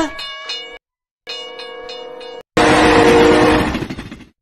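Soundtrack of a cartoon clip playing in a web video player: two held horn blasts, each a steady chord, then a much louder rushing crash of noise about two and a half seconds in.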